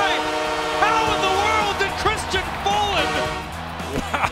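Arena goal horn sounding a sustained multi-tone chord for a goal just scored, cutting off near the end, with voices and music over it.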